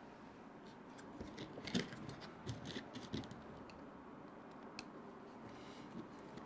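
Faint, scattered clicks and light taps of small screwdrivers against the plastic and metal rear suspension parts of an RC truck as they are handled. The clicks come in a cluster through the first half, with a single click near the end.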